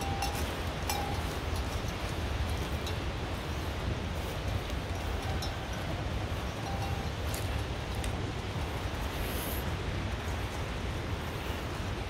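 Steady rushing wind noise buffeting the microphone, heaviest in the low end, with a few faint clicks scattered through it.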